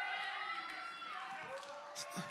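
Faint voices of a church congregation responding to the sermon, with one long drawn-out call held for over a second in the second half.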